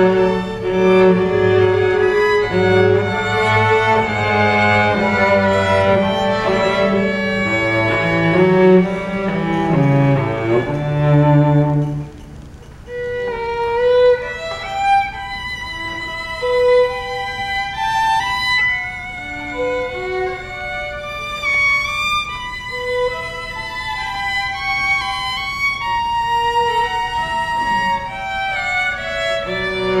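School string orchestra playing, violins over cellos and basses. Full and dense for about the first twelve seconds, then a brief dip and a quieter, thinner passage of higher violin lines.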